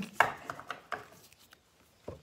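A woman's brief laugh, then a few light taps and clicks as a box of paper cards is handled.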